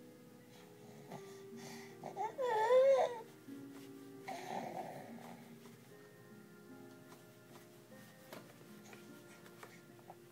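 Background music with soft plucked notes throughout. About two seconds in, a baby gives a short, loud, wavering vocal sound, and a second or so later a briefer noisier one.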